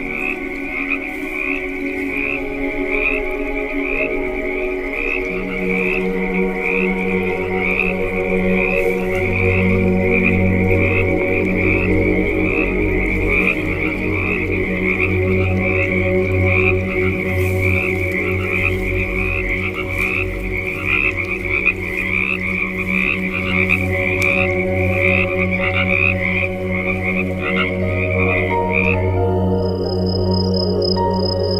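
A chorus of frogs calling in a rapid, even pulsing rhythm, layered over ambient music with low sustained drone tones that come in a few seconds in. The pulsing calls stop near the end.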